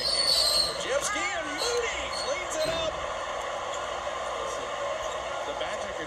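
Basketball arena crowd noise during live play: a steady hum from the crowd, with a few short pitched sounds rising above it in the first three seconds.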